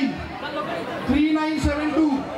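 A person's voice with crowd chatter, a drawn-out held sound rising about a second in, with a few low thumps.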